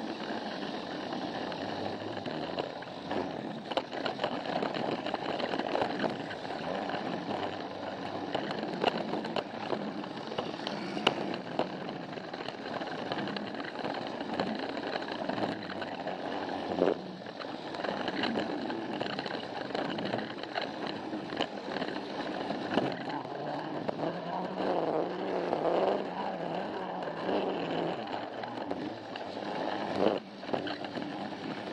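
Battery-powered Plarail Thomas toy train running, heard from on board: a steady whir of the small motor and gears, with frequent clicks and rattles as the wheels roll over the plastic track joints.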